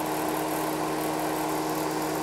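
Duct blaster fan running steadily, holding the duct system at the 25-pascal test pressure for a leakage reading: an even hum with a constant low tone.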